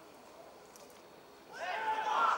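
Distant shouting voices at an outdoor football match, starting about one and a half seconds in after a low stretch; the shouts rise and fall in pitch.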